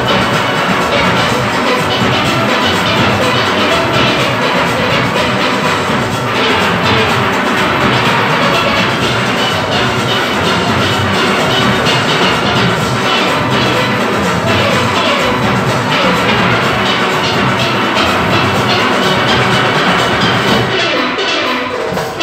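A large steel orchestra playing: many steelpans sounding together, from high lead pans down to bass pans, over a steady beat.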